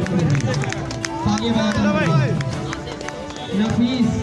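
A man's voice over a microphone and loudspeaker, with music playing underneath and light crowd noise.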